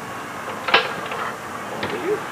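A65 Continental aircraft engine being hand-propped without firing: one sharp click about three-quarters of a second in, the magneto snapping as the propeller is swung through, and a fainter click near the end.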